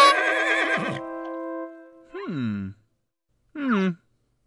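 A short cartoon jingle with a warbling melody stops about a second in, its held notes ringing out. About two seconds in comes a falling, wavering horse whinny, and a second, shorter falling call follows near the end.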